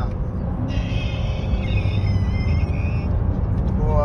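Corvette V8 and tyre noise heard from inside the cabin while driving along, a steady low rumble.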